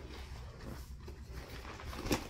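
Faint rustling of the inflatable bouncer's shiny, cloth-like fabric as it is unfolded and handled.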